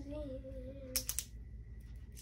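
A young person's drawn-out exclamation trailing off and fading out over the first second, followed by a few quick sharp clicks about a second in.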